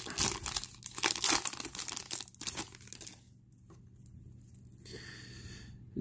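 Foil wrapper of a trading-card pack being torn open and crinkled in the hands, a dense crackling that stops about halfway through, leaving only faint handling.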